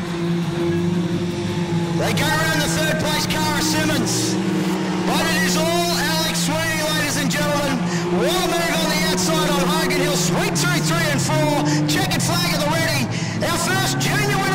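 Junior sedan race cars' engines running steadily on a dirt speedway. About two seconds in, music with singing and a beat comes in over them.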